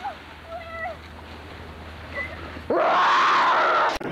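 A child's short, high-pitched calls. About two-thirds of the way in they give way to a loud rush of noise lasting just over a second, which ends in a sharp click as the home-video tape cuts.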